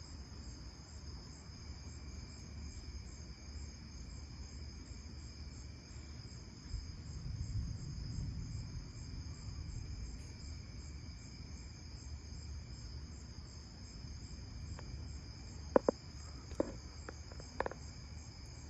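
A steady chorus of night insects trilling high, with a low rumble of thunder swelling about seven seconds in and fading by ten. A few sharp clicks come near the end.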